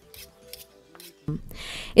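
Two steel knife blades scraped against each other in a few short strokes, one knife being sharpened on the other, with a longer scrape near the end. Faint background music runs underneath.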